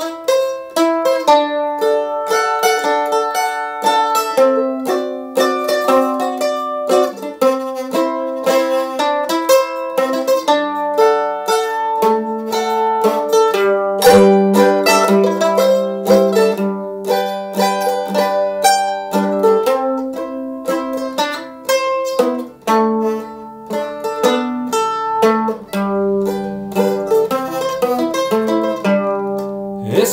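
F-style mandolin picking the song's melody alone in an instrumental break between verses, a steady stream of plucked notes with several strings often sounding together.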